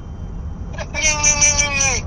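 Low steady road rumble inside a moving car, then about a second in a person's voice holds one long, level, drawn-out note for just over a second.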